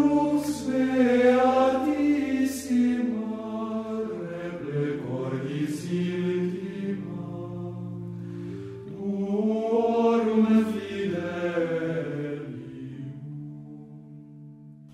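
Background music of voices singing a slow chant over sustained low notes, in two phrases, the second beginning about nine seconds in, fading away near the end.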